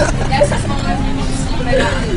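Kids' voices talking over one another inside a moving bus, with the bus engine droning steadily underneath.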